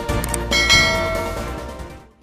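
A bell-chime sound effect strikes once about half a second in over the intro music and rings out, fading toward the end: the notification-bell cue of a subscribe animation.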